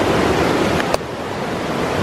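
Rushing river rapids, a steady roar of water, with a single short click about halfway through.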